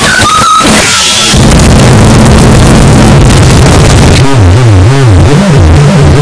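Extremely loud, heavily distorted sound with no words. Shrill high pitches in the first second give way to a harsh, buzzing low drone, whose pitch wobbles up and down repeatedly from about four seconds in.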